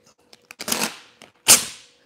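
Adhesive vinyl film being pulled off a glass panel after trimming: a few light clicks and a crackling rustle, then a sharp loud snap about a second and a half in.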